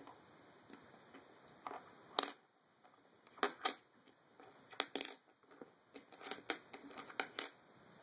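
Coins being slid and nudged across a wooden tabletop by fingers. Scattered sharp clinks and taps come as they knock against each other and the wood, the loudest about two seconds in.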